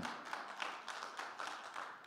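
Congregation applauding with many hands, the clapping thinning out and fading away toward the end.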